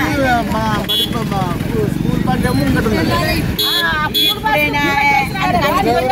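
A woman talking loudly and agitatedly, with crowd chatter and street traffic behind her.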